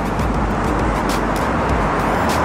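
Steady road traffic noise, the hiss of passing vehicles' tyres and engines.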